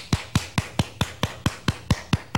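A man clapping his hands rapidly and evenly, about four to five claps a second.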